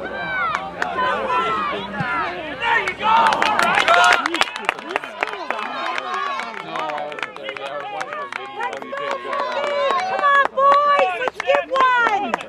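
Several soccer spectators' voices talking and calling out over one another, unclear enough that no words come through, with scattered sharp clicks among them.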